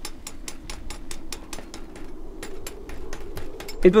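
Rapid, evenly spaced mechanical clicking, about eight clicks a second, over a steady low hum.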